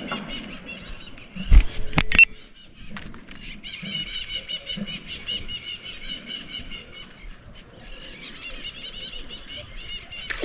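Birds chattering steadily in a rapid run of high, repeated notes. Two sharp knocks about one and a half and two seconds in are the loudest sounds.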